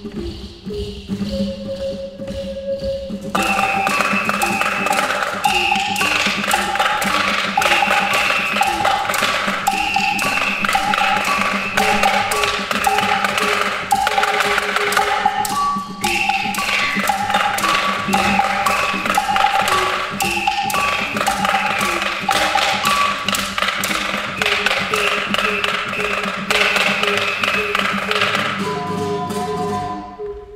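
Ocarina ensemble with acoustic guitar playing an upbeat tune over busy, fast tapping percussion. It opens with a quieter single ocarina line, and the full group comes in about three seconds in.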